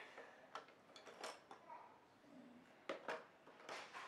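A few faint, light clicks and taps of wooden coloured pencils being handled and knocking together, scattered across a few seconds of near quiet.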